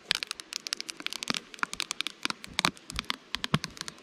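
Plastic acetate sheet being peeled off the top of a jataí stingless-bee honey super, crinkling and crackling in a rapid run of small clicks as it pulls free from the sticky propolis and honey.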